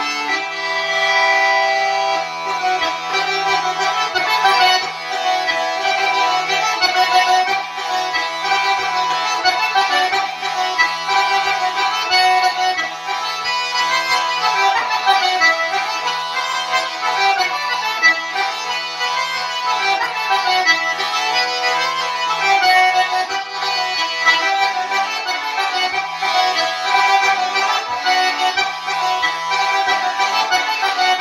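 Diatonic button accordion playing a lively traditional dance tune solo. The melody runs over a steady low bass note.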